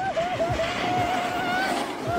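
A snowboard sliding over packed snow, a steady scraping hiss with a wavering high whine over it.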